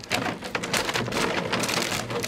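Empty plastic water bottles crackling and clattering against each other and the plastic pool as a puppy scrambles through them, a dense, unbroken crackle.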